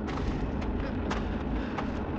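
Radio-drama sound effect of a forest fire burning: a steady crackle over a low rumble, with scattered sharp pops.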